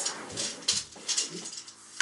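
Steel tape measure blade being stretched and laid across the floor, with a few short metallic clicks and scrapes.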